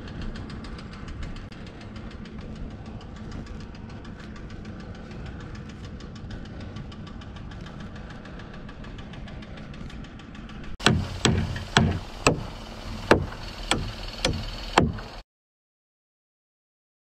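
An engine idling steadily for about ten seconds, then a hammer striking about eight times, roughly half a second apart.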